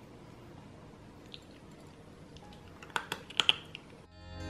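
Cat eating dry kibble from a bowl: faint, irregular crunching, then a cluster of sharper, louder crunches and clicks about three seconds in.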